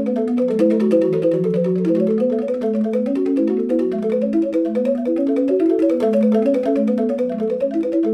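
A pair of Balinese rindik, bamboo xylophones, played together in a fast, continuous stream of short, overlapping mallet notes, low and high parts weaving around each other.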